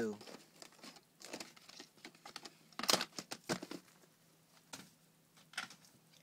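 A VHS cassette and its plastic case being handled: scattered rustles and a few sharp clicks, the loudest about three seconds in.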